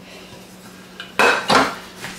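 A granite-coated nonstick pot with a glass lid is set down on a glass tabletop: a faint click, then two sharp clinks a third of a second apart, about a second in.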